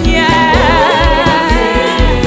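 Live gospel worship music: a woman's voice sings a held, wavering melody over electronic keyboard accompaniment with sustained bass notes.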